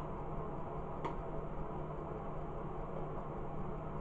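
Quiet room tone: a steady low hum, with one faint click about a second in.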